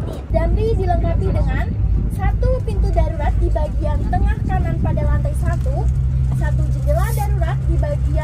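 Indistinct voices talking over the steady low drone of a Volvo B11R double-decker coach on the move, heard from inside the cabin.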